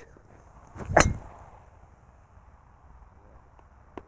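A golf club swung and striking a ball off the turf once, about a second in: a short swish that builds into a sharp crack of impact.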